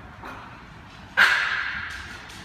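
A dog barks once, sharply, about a second in, the sound trailing off over most of a second.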